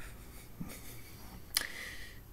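A man's short, sharp intake of breath about a second and a half in, during a pause in his speech, over faint room tone.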